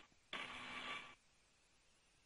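Launch-control radio loop keyed open with no one speaking: a short burst of hiss with faint steady whine tones in it, switching on and cutting off abruptly, under a second long, then dead silence.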